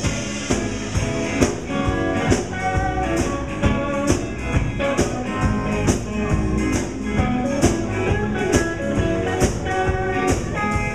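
Live blues band playing an instrumental passage with no vocals: electric guitar over a drum kit keeping a steady beat, with bass underneath.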